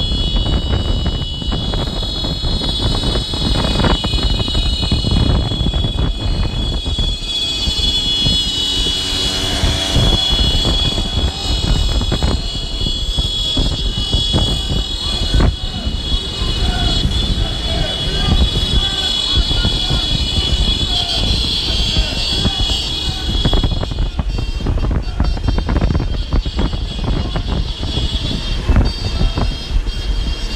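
A steady, high-pitched electronic tone like an alarm or buzzer sounds continuously, then stops near the end. Under it is heavy low rumble and scattered street noise with voices.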